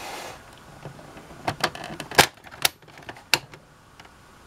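Hard plastic clicks and knocks from the mechanism of a Star Wars Carbon Freezing Chamber toy playset being worked by hand. There are about five sharp, irregularly spaced clicks in the second half, the loudest a little after two seconds in.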